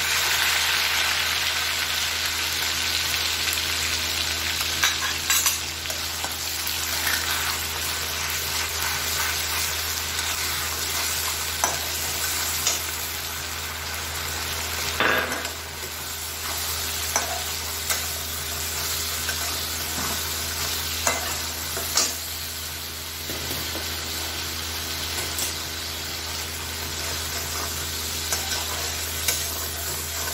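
Ground onion paste sizzling in hot mustard oil in a steel kadhai, loudest as the paste goes in and then settling to a steady frying hiss. A metal spatula stirring it scrapes and knocks against the pan every few seconds.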